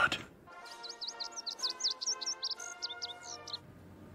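A bird chirping rapidly in quick rising and falling notes over a quiet, sustained music chord, starting about half a second in and stopping shortly before the end.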